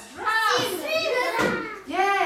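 Young children's high-pitched voices, rising and falling in a sing-song way, with a brief lull about one and a half seconds in.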